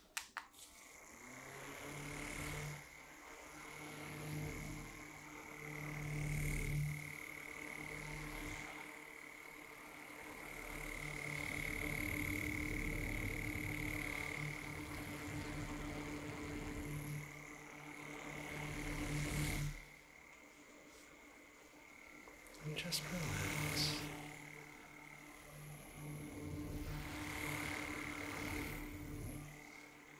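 Two small handheld electric fans running close to the microphone: a steady motor hum with a thin high whine, swelling and fading as the fans are moved toward and away. The hum drops away around twenty seconds in and comes back about three seconds later.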